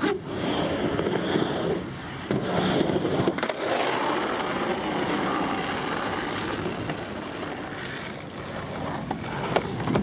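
Skateboard wheels rolling down a wooden quarter pipe and across asphalt, a steady rumble with a few sharp clacks from the board about two to three seconds in and near the end.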